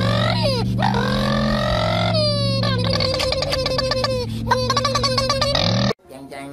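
A dubbed, drawn-out comic "oh noooo" voice that wails and slides in pitch over a steady low drone. About two seconds in it breaks into a rapid stuttering, chopped vocal effect, which cuts off suddenly at the end.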